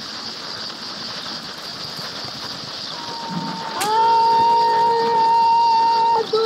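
A few seconds of steady, noisy rustling haze, then a voice swoops up into a long, loud held note about four seconds in.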